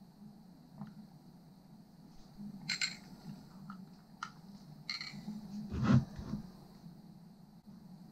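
A person drinking from a glass: quiet sips, swallows and small mouth clicks, with a louder short throat or mouth sound about six seconds in, over a faint low room hum.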